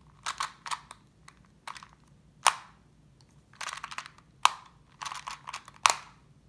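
Rubik's Clock puzzle being worked by hand: its wheels click through their positions in several short runs of rapid clicks, with a few louder single clicks, as of pins being pushed, about two and a half seconds in, around four and a half seconds in, and near the end.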